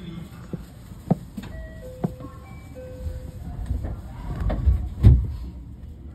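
Station sounds around a JR West 223 series 2000-subseries train standing at the platform: short melodic chime tones, a few sharp knocks, and a low rumble that builds to a heavy thump about five seconds in, as of the doors closing.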